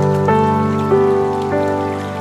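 Slow ambient piano music, a new note or chord about every half second, over the steady rush of a waterfall.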